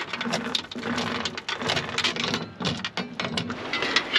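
Steel anchor chain hauled in by hand over a boat's bow roller, its links clinking and rattling in quick, irregular clicks.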